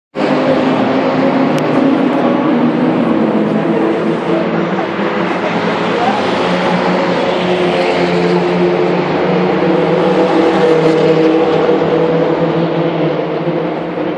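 Track-day car engines running steadily nearby: a loud, even engine note that holds a nearly constant pitch, drifting only slightly.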